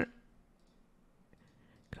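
A few faint computer mouse clicks over near-silent room tone, as a Null operator is picked from the TouchDesigner create menu.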